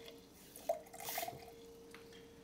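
A kitchen tap is shut off, followed by a few drips of water and brief light clinks of a glass cup being handled in a stainless steel sink, all fairly quiet.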